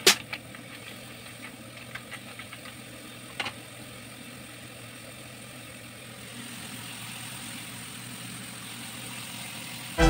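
Mussels and shrimp simmering in a frying pan on a gas stove, a steady low sizzle that grows a little louder after about six seconds. A few light taps and scrapes of a wooden spatula against the pan come in the first few seconds.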